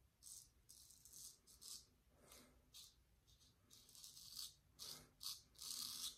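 Economy Supply 800 straight razor scraping through lathered stubble: a series of short, faint rasps, a little louder toward the end.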